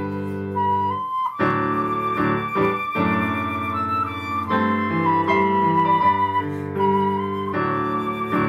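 Concert flute playing a slow melody of long held notes over a backing accompaniment with sustained low chords; everything breaks off briefly about a second and a half in, then the tune carries on.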